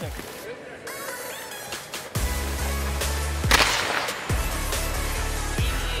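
Background electronic music with a heavy bass beat that comes in about two seconds in. About halfway through, a loud sharp crack with a short noisy tail: a hockey slap shot off a graphite composite stick.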